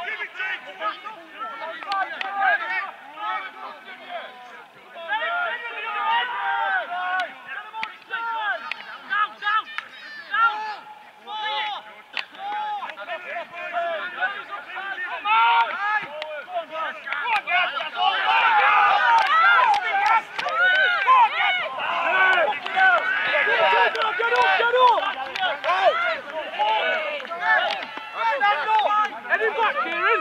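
Several men's voices shouting calls over one another on a rugby league pitch, growing louder and busier about two-thirds of the way through.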